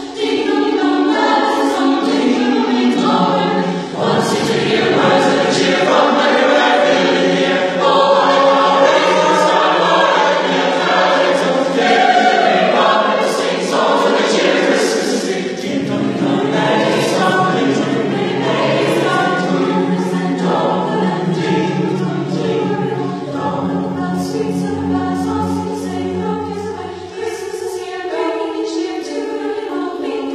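A high school choir singing in harmony, several voice parts holding long sustained chords, with a lower part joining a few seconds in.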